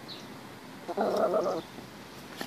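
A short burst of laughter from a person close to the microphone, lasting under a second, about a second in.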